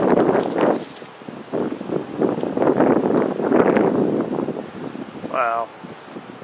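Gusts of wind buffeting the microphone in rough surges, mixed with indistinct voices, and a short wavering vocal sound near the end.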